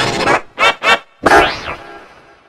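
Logo-jingle audio run through a 'G Major' edit effect, distorted and pitch-shifted: two short pitched blips in quick succession, then a longer sound that fades out.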